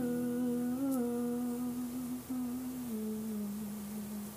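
A singer's voice humming one long held note with a slight waver, stepping down a little in pitch about three seconds in, with no strummed guitar under it.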